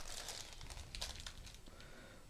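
Faint crinkling of a plastic lolly bag being handled and set down, fading out within the first half second, with a single light tap about a second in.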